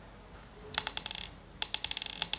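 Small counting beads clicking and rattling against each other and their clear box as three unit beads are taken away. There are two quick bursts of clicks, the second starting just past halfway.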